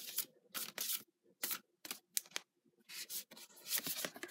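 A tarot deck being shuffled by hand: a series of short, irregular swishes as the cards slide against each other, with a longer one near the end.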